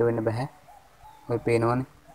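A man's voice, drawn out and indistinct: one stretch at the start and another from about 1.3 to 1.9 seconds in, with a quiet gap between.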